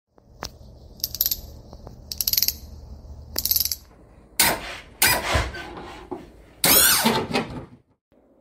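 Logo sound effects: a click, three short buzzing bursts about a second apart, then three loud whooshing hits that die away near the end.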